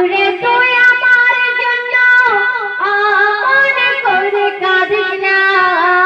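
A woman singing a Bengali Islamic gojol into a handheld microphone, with long held notes that slide and waver in pitch.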